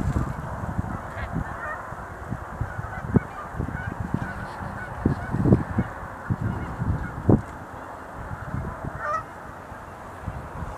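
Sandhill cranes calling, with gusts of wind thumping on the microphone now and then.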